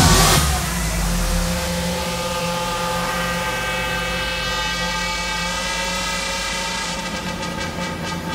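Loud electronic dance music cuts off just after the start. It gives way to a sustained, steady electronic drone chord with a hiss over it; the hiss thins out near the end.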